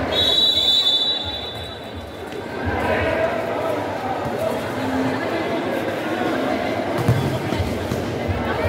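Referee's whistle, one steady blast of about a second and a half, signalling the kick-off, over the chatter of spectators in an echoing sports hall; a ball is kicked and knocks on the court, sharpest about seven seconds in.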